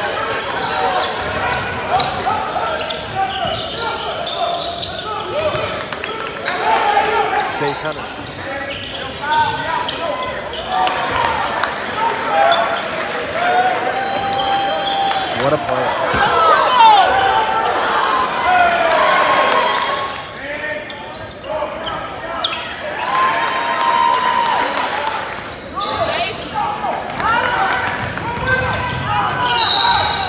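Gym sound of a live basketball game: the ball bouncing, sneakers squeaking on the hardwood, and players and spectators shouting and calling out, echoing in a large hall. The noise swells about halfway through.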